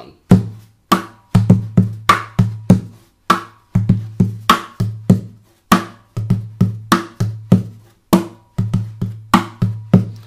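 Takamine acoustic guitar body drummed by hand in a repeating bass–snare rhythm. The heel of the palm thumps the top for a deep bass-drum sound, and lighter hits near the edge and side give a sharper snare sound, at two to three strikes a second.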